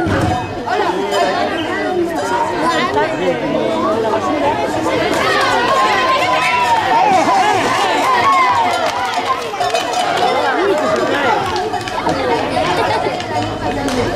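A crowd of spectators talking and calling out all at once, many voices overlapping into a steady chatter.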